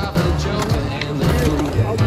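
Skateboard wheels rolling on a concrete bowl, with sharp clicks and knocks from the board, under a music track with a steady bass line.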